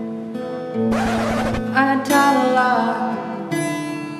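Acoustic guitar being strummed in a song, with a melody line gliding over it from about two seconds in.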